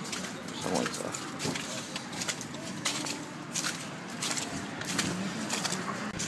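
Footsteps of a person walking through slush on a pavement, a short sharp step sound about every 0.7 seconds over steady outdoor background noise.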